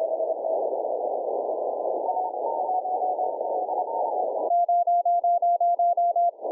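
Shortwave band noise heard through a narrow CW audio filter, with faint Morse code tones underneath. About four and a half seconds in, a strong Morse code signal comes in as a string of loud, evenly spaced beeps at one pitch.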